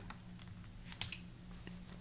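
A few faint computer keyboard keystrokes, the clearest about a second in, over a low steady hum.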